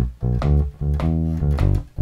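Electric bass guitar playing a blues shuffle line: a run of short, detached notes with brief gaps between them.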